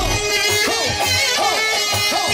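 Live band music led by saxophone: a quick melody full of bending notes over a held tone and a steady bass beat.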